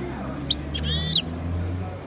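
European goldfinch giving a short high chip about half a second in, then a brief burst of twittering call notes around a second in.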